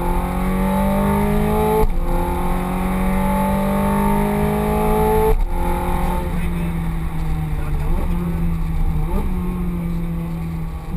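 Ferrari F430 Scuderia's V8 engine heard from inside the cabin under hard acceleration, its pitch climbing through the revs and dropping abruptly at two quick gear changes, about two seconds in and about five seconds in. After that the engine note runs lower and eases off, with two short upward blips near the end.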